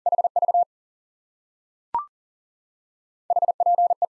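Morse code at 40 wpm on a steady sidetone of about 700 Hz: the element HV is sent again as a quick burst of dits and dahs, then a short two-note courtesy beep sounds about two seconds in. Near the end, the next element, HP ('hope'), starts in Morse.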